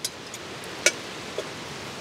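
Metal canning ring clinking against the inside of a stainless steel kettle as it is dropped in: a few light clicks, the sharpest a little under a second in, over a steady hiss.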